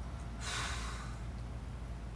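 A man breathes out hard once, a short rush of breath about half a second in that lasts under a second, as he catches his breath between dumbbell presses.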